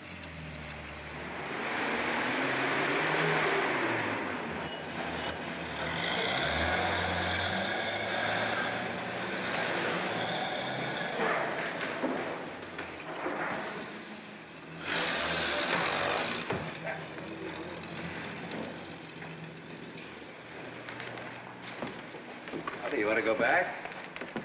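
Motor-vehicle sounds: a steady engine rumble with road noise, and a loud, short hiss like a bus's air brakes about fifteen seconds in.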